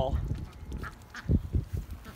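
Rouen ducks quacking, a few short calls about a second in.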